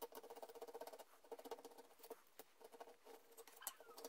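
Faint scraping of a steel hand tool along the edge of a laminated wooden knife-handle blank held in a vise, in a quick run of strokes at first, then shorter irregular ones.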